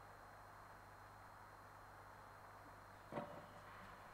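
Near silence: a steady low electrical hum and faint hiss, with one short knock about three seconds in.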